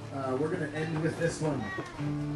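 A person's voice with strongly gliding pitch, not made out as words. The sustained chord heard before and after drops out while it sounds.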